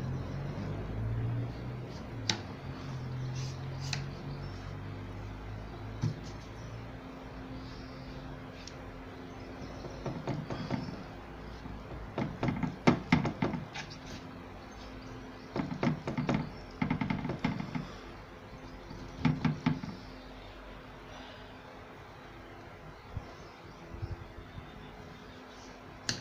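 Paintbrush scrubbing over a wooden frame in dry-brush strokes, coming in several short bursts of quick scratchy strokes through the middle of the stretch, over a low steady hum.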